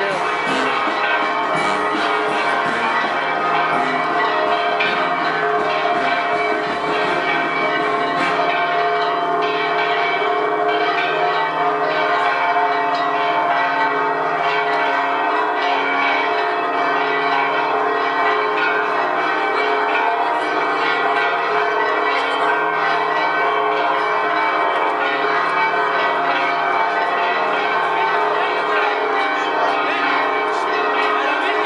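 Church bells ringing continuously, many overlapping tones sounding together, with a steady level and no clear beat.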